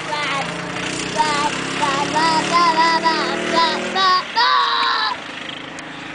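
A go-kart's small two-stroke engine running past, its pitch slowly falling over about four seconds before fading. High-pitched voices call out over it, loudest just before the end.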